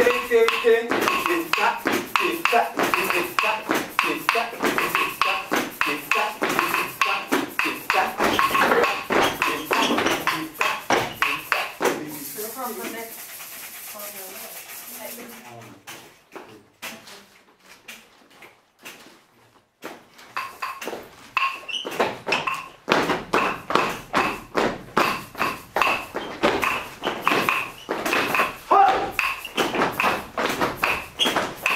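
A group of dancers beating a fast, steady rhythm with their hands and feet, with voices over it. The beating fades away for several seconds in the middle, then starts up again.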